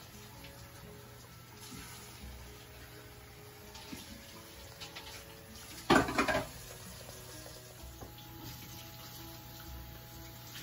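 Faint steady sound of water in a kitchen, under quiet background music, broken by one short loud spoken word about six seconds in.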